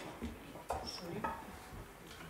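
Classical guitar being tuned: a couple of short plucked string notes about halfway through as the pegs are turned, the strings gone out of tune with the hall's humidity.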